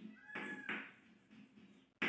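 Chalk scraping on a blackboard in a few short writing strokes. About a quarter second in, one brief high, slightly bending squeal sounds over a stroke.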